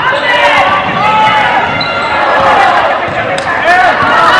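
A basketball being dribbled on a hardwood gym floor, with spectators' voices over it.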